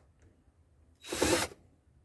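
Cordless TITAN drill-driver run in one short burst of about half a second, about a second in.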